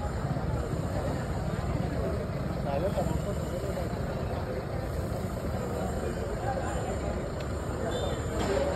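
A steady low rumble with faint, indistinct voices over it.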